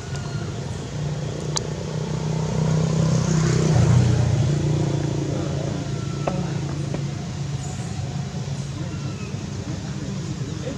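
Steady low hum of a motor vehicle's engine, swelling to a peak about four seconds in as it passes and then fading, with two brief faint clicks.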